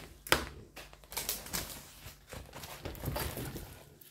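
A diamond-painting canvas being unrolled and smoothed out by hand: irregular rustling and crinkling of its plastic cover film and backing paper, with a sharp tap about a third of a second in.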